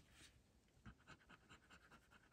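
Near silence, with faint short scrapes coming about five a second from about a second in: a metal scratcher tool rubbing on a lottery scratch ticket.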